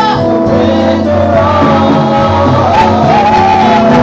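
Gospel praise-and-worship singing: several voices sung into microphones, with gliding, held melody notes over a sustained instrumental backing.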